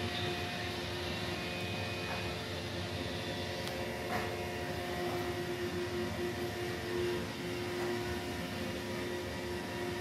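Roomba robot vacuum running, a steady motor hum with a few held tones.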